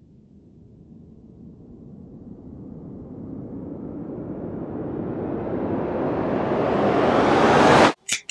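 Riser sound effect: a rushing hiss that grows steadily louder and climbs in pitch for about eight seconds, then cuts off suddenly at the end.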